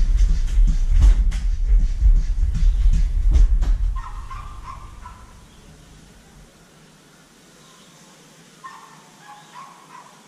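A hand-pumped garden sprayer being pumped up: a rhythmic series of thumps with a low rumble, about three strokes a second, stopping about four seconds in. After that it is much quieter, with faint high whining twice, like a dog whimpering.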